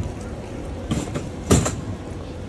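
Footsteps of boots on a stone-paved sidewalk, three steps, over a steady hum of street noise.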